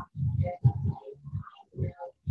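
A low, indistinct voice in short broken bursts, with no clear words.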